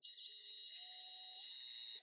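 Electric stand mixer with a wire whisk attachment beating sugar into thick sweet potato puree: a high-pitched motor whine that steps up in speed about half a second in, then runs steady and cuts off at the end.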